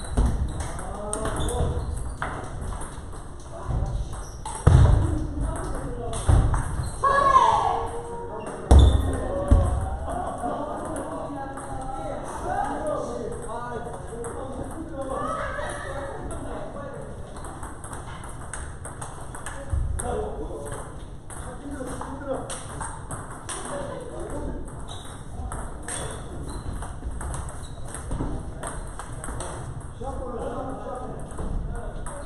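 Table tennis being played: a steady run of sharp clicks as balls strike paddles and tables, from rallies at several tables at once, with voices talking in the background. A few heavy thuds come in the first ten seconds or so.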